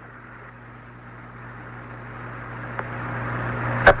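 Hiss and low hum of the Apollo 11 air-to-ground radio link in a pause between Buzz Aldrin's transmissions from the lunar module ladder, the hiss slowly growing louder, with one faint click near the end.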